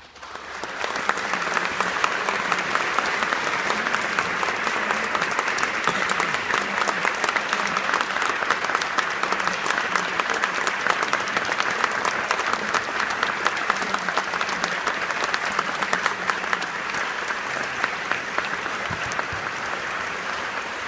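Audience applauding in a concert hall at the end of an orchestral piece. The clapping swells up within the first second and then holds steady, easing slightly near the end.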